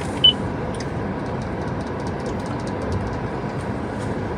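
Steady hum of a car heard from inside its cabin, with a short high beep about a quarter of a second in.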